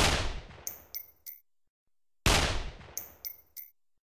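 Dubbed-in AK-47 gunshot sound effect, fired twice about two seconds apart. Each is a single sharp shot with a decaying tail, followed by three short high pings.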